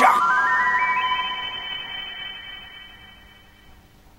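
Synthesized cartoon sound effect: a bright electronic tone, quickly joined in the first second by a rising run of higher tones, then held and slowly fading out.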